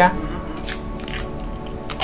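Plastic bubble wrap crinkling in a few short rustles as a hand presses and smooths a wrapped package, over soft background music.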